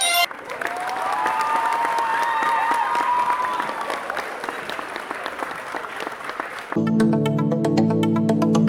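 Recorded crowd applause with cheering, a dense patter of clapping, played as the answer is revealed. It stops near the end, where electronic background music with a steady beat comes back in.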